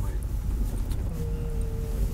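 Car engine and tyre rumble heard from inside the cabin as the car rolls slowly. A brief, steady, level tone joins in about a second in.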